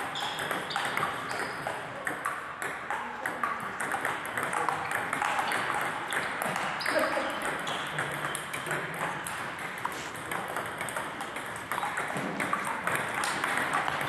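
Table tennis balls clicking off paddles and table tops in quick, irregular succession during rallies, with play at more than one table.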